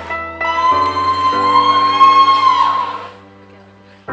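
Background music with guitar, ending on a long held note that fades out about three seconds in.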